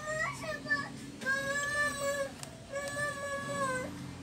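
A young child's voice making two long, high, drawn-out notes of about a second each, after a second of shorter wavering sounds.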